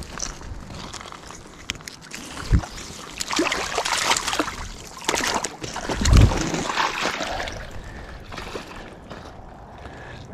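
Water splashing and sloshing in the shallows as a rope stringer of rainbow trout goes into the river. Two dull thumps, the louder about six seconds in.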